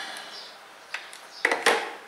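A few sharp clicks, loudest about a second and a half in, as a power switch is pressed to switch on the battery pack feeding a Raspberry Pi.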